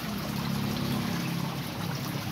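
Water from an aquaponic grow bed's return outlet pouring and trickling steadily into a fish pond, with a steady low hum underneath.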